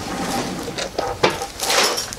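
Small plastic toy animals being handled on a wooden table, clicking and knocking against it a few times, with a rustling hiss near the end.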